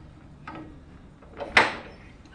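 Air-cooled four-cylinder Wisconsin VP4 engine being hand-cranked without starting: a faint clank about half a second in, then one loud, sharp mechanical sound about a second and a half in as the crank turns it over.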